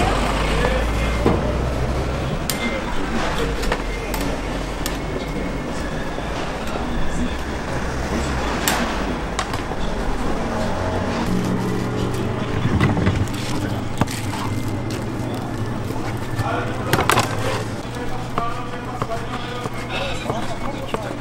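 Busy traditional-market ambience: indistinct voices of shoppers and vendors over vehicle noise, with scattered clatter.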